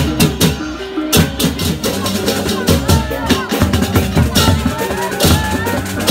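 Balinese baleganjur gamelan playing loudly: dense, rapid clashing of cymbals and drum strokes over held gong tones, with crowd voices mixed in.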